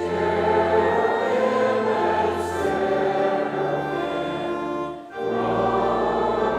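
Church choir singing a hymn in sustained chords over held organ bass notes, with a short break between phrases about five seconds in.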